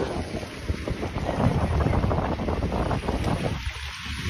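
Wind buffeting a phone's microphone outdoors, a steady rushing noise.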